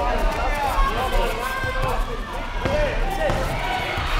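Kickboxing sparring in a reverberant sports hall: voices calling out over a few dull thuds of kicks, punches and feet landing on the foam mats.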